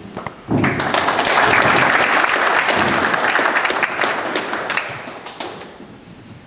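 Audience applauding: many people clapping at once, starting suddenly about half a second in, loudest in the middle and dying away near the end.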